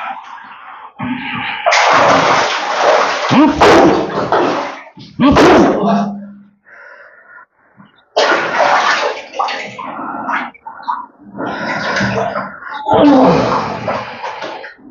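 A man's loud, harsh gasping and groaning in bursts, with a pause of about two seconds in the middle, while he sits in water in a tiled bathing tub; the small tiled room makes it ring.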